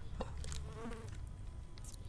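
A faint buzz, like an insect's, lasting about half a second near the middle, over a low hum. Light handling clicks and a short plastic rustle come near the end.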